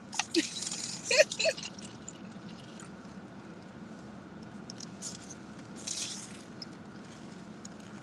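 Juice handled and poured from a plastic bottle into a cup, a soft splashing hiss in the first second and a half, then a short sip or rustle around six seconds. Between them a low steady hush of the car's interior.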